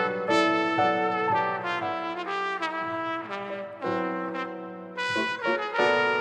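Instrumental smooth jazz: a lead wind instrument plays a phrase of quick notes over accompaniment, easing off briefly about five seconds in.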